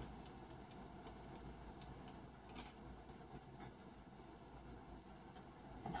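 Faint, irregular clicking from a mini hot glue gun as its trigger is squeezed to push out a thick bead of glue onto wax paper.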